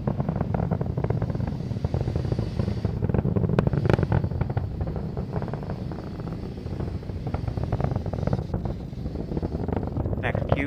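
Falcon 9 rocket's first-stage engines during ascent: a steady low rumble with dense crackling running through it, and a few sharper cracks about four seconds in.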